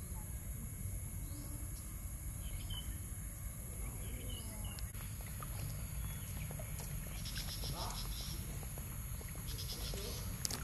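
Outdoor pond-side ambience: a steady low rumble and a constant high hiss, with a few faint short chirps and two brief high rattling calls near the end.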